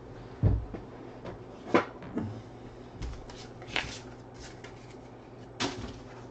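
A handful of separate knocks and clicks from objects being handled and set down on a desk: a dull thump about half a second in, then sharper clicks and knocks spread through the rest, over a low room hum.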